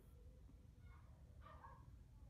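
Near silence: room tone with a low rumble and a faint, brief indistinct sound a little past the middle.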